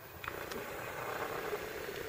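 A faint, steady hum under a light rustling hiss.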